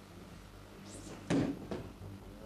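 A single heavy thud a little past halfway, with a short swish just before it and a lighter knock after: a body landing on the mat in an aikido breakfall.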